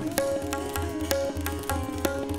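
Sitar and tabla playing Hindustani classical music: quick, sharp tabla strokes, with low bass-drum strokes underneath, over sitar notes that bend slightly in pitch.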